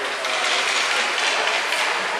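Ice rink play: skate blades scraping and carving the ice as a steady hiss, with a few faint knocks of hockey sticks and puck.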